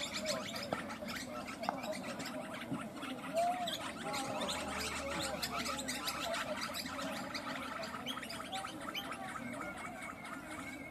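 A flock of birds chattering and chirping continuously, a dense mix of quick clicks and short calls.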